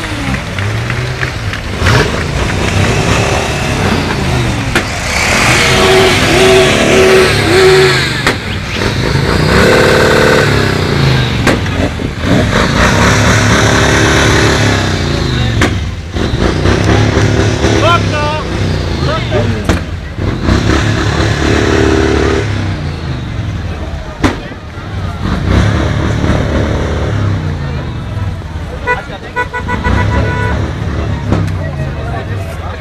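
A column of motorcycles riding past at close range, engines running and revving unevenly, with horns sounding several times.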